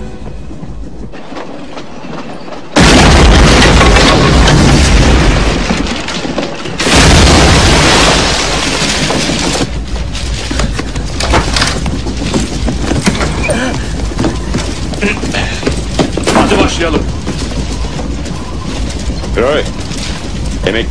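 Two loud explosions on a film soundtrack, the first about three seconds in and the second about four seconds later, each rumbling on for a few seconds, followed by a busy stretch of noise and voices.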